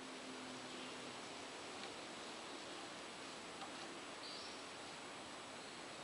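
Faint steady hiss of background noise, with no distinct sound events.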